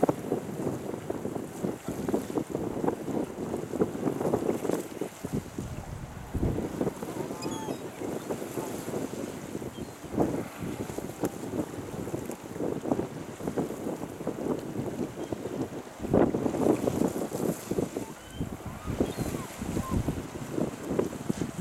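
Small waves washing and splashing over a rocky shoreline in an irregular, surging rush, with wind buffeting the microphone. The surge grows louder for a couple of seconds near the end.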